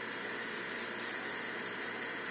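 Steady, even background hiss with no distinct event standing out.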